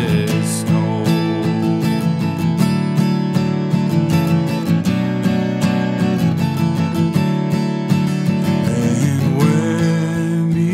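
Acoustic guitar strummed steadily through an instrumental break in a worship song. A man's singing voice comes back in near the end.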